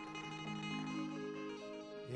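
Harmonium played softly, held reed notes that step to new pitches a few times in a slow melodic phrase.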